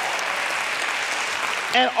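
Congregation applauding, a steady wash of clapping. A man's voice comes in near the end.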